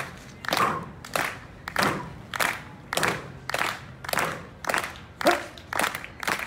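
Crowd clapping together in a steady rhythm, just under two claps a second, to spur on a street performer's stunt. A brief voice is heard near the end.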